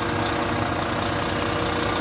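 Volvo 11-litre diesel engine of a coach idling steadily, with a thin steady tone above the even running.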